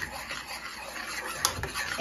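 Metal spoon stirring thick mashed potatoes in a saucepan: a steady rubbing scrape against the pan, with one light tap about one and a half seconds in.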